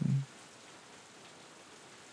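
Steady light rain ambience, a soft even hiss without drops standing out.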